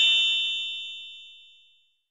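Electronic chime sound effect ringing on a few high steady tones and fading out over nearly two seconds.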